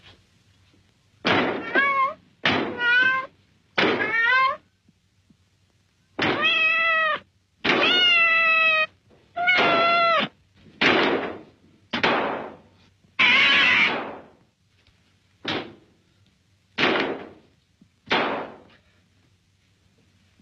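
A cat meowing over and over, about a dozen meows: three short ones, then several long drawn-out ones, then shorter falling ones near the end.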